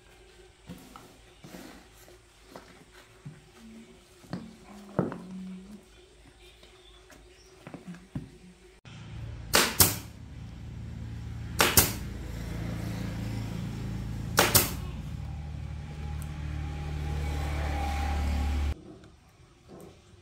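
Pneumatic staple gun firing staples into a motorbike seat cover: three sharp snaps, two and three seconds apart, over the steady hum of an air compressor that starts about nine seconds in and cuts off about a second before the end. Before that, only faint handling clicks of the cover being stretched.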